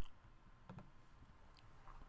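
Two faint computer mouse clicks, one a little under a second in and one near the end, over low room tone.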